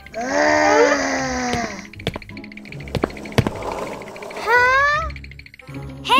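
A cartoon character groaning with strain over background music, with a short rising vocal sound shortly before the end.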